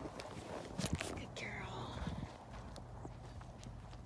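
Soft steps of a horse on dirt, with a few sharp knocks about a second in and a brief low voice sound just after.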